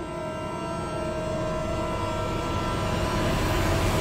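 Dramatic background score: a sustained drone of held tones under a rushing swell that grows steadily louder, building tension.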